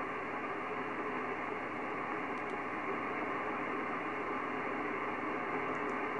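Steady hiss and static from a Kenwood TS-950SDX HF transceiver's speaker. It is receiving upper sideband on the 11.330 MHz aeronautical channel with no station transmitting, so the noise is cut off above about 3 kHz by the receiver's filter.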